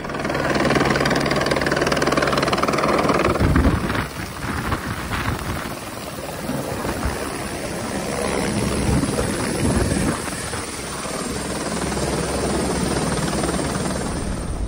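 A helicopter running close by on the snow: a steady, loud rotor beat with rushing rotor wash. A thin, high turbine whine joins about halfway through.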